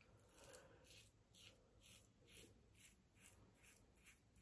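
Faint, rapid scraping of a Paradigm Diamondback safety razor with a fresh Kai blade cutting stubble through shaving lather, in short strokes about three a second.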